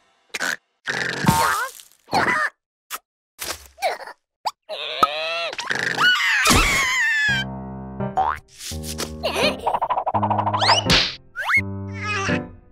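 Cartoon soundtrack: a run of short comic sound effects and a character's squeaky wordless vocalizing, then a surprised yell. About seven seconds in, a comic musical cue of repeated chords takes over, with springy rising boing glides near the end.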